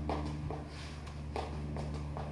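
A few soft footfalls of sneakers on a concrete floor as a punching combination is thrown, over a steady low hum.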